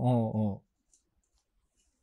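A man's short 'ou' of acknowledgement lasting about half a second, then near silence.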